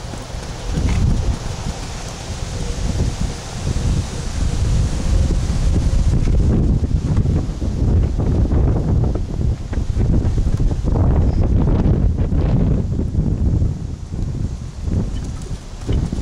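Wind buffeting the camera's microphone: a loud low rumble that rises and falls in uneven gusts.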